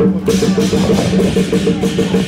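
Lion-dance percussion band playing: drum struck with gongs and cymbals in a fast, steady beat.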